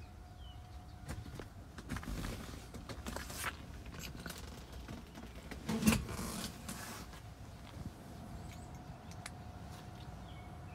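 Faint rustling, scattered clicks and knocks from someone moving about inside a car's vinyl-trimmed cabin, with one louder knock about six seconds in.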